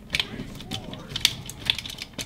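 Hard plastic clicking and clattering from a Beast Wars Optimus Primal action figure's arm mechanism, worked by its back lever to swing the arms up and down. There are a few sharp clicks, two close together near the start and several more in the second half.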